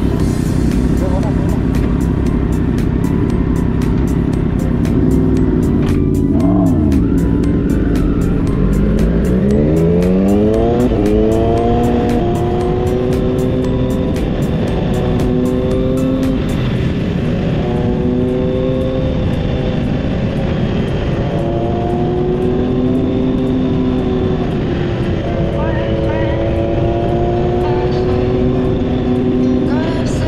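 Motorcycle engine heard from the rider's own bike under heavy wind noise. The revs dip and come back up about six seconds in. From about nine seconds the engine pulls hard up through the gears, the pitch climbing and then settling, with a small step at each shift.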